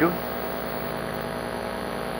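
Steady electrical mains hum with a faint hiss.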